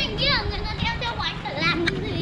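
A child's high voice calling out in a quick run of short calls that fall in pitch.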